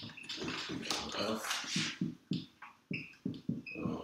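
Dry-erase marker squeaking and scratching on a whiteboard in a quick run of short strokes as words are written, with brief high squeaks here and there.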